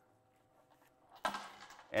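Metal chain shoulder strap and its clasp clinking as they are unhooked from a leather handbag, starting about a second in after a near-silent moment.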